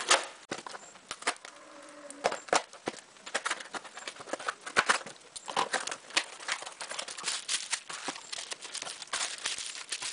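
Scissors cutting through packing tape on a small cardboard box, then the cardboard flaps being pulled open and bubble wrap crinkling as it is handled and lifted out. Irregular snips, scrapes and rustles.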